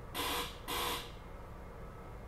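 Two short buzzy electronic warning tones, each about a third of a second and a moment apart, from a SEPTA regional rail car's door-warning signal, typical of the doors about to close. Under them runs the steady low hum of the standing car.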